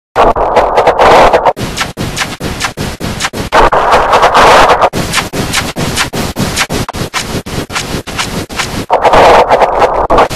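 Heavily distorted, clipped noise from a video-effects edit, chopped by rapid stuttering dropouts several times a second. Louder, harsher stretches come near the start, in the middle and near the end.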